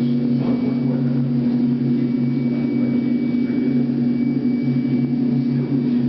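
Experimental drone music for aircraft engines: a loud, unbroken drone of several low held tones, with a thin high whine above.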